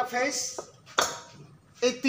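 Porcelain cut-out fuse carrier pulled from its base, a sharp ceramic clink about a second in, opening that line of the cut-out.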